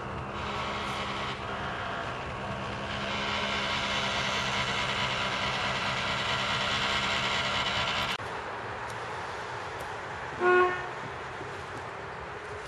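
Diesel engine of a tracked excavator clearing felled trees, running steadily and growing louder after about three seconds, then stopping abruptly. After that comes a quieter steady background noise and, near the end, one short horn toot that is the loudest sound.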